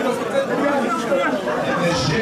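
Crowd chatter in an indoor hall: many voices talking at once around the ring.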